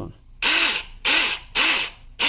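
Saker cordless mini chainsaw run in three short bursts on its trigger: each time the electric motor and chain spin up and fall away as the trigger is let go, about half a second apart.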